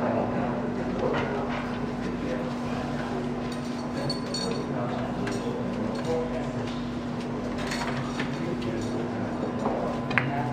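Low murmur of onlookers' voices over a steady low hum, with a few faint clicks; no shot is struck.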